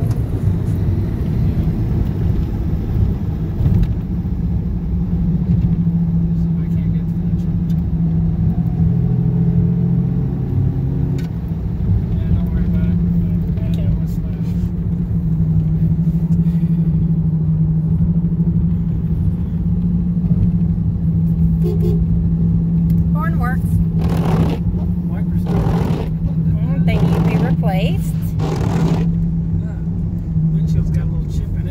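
Toyota Camry driving at a steady speed, heard from inside the cabin: a constant low road-and-drivetrain drone with a steady hum, which the driver takes for a worn wheel bearing.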